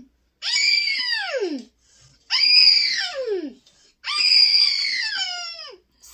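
Three high-pitched vocal squeals, each sliding down in pitch over a second or so, with short pauses between them.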